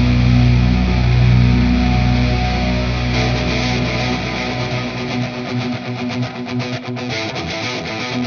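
Doom metal recording: a held heavy chord on guitar and bass fades away over about the first five seconds, leaving a lone guitar strumming a quick, even rhythm.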